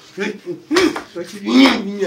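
A man speaking emphatically, rapidly repeating one word over and over.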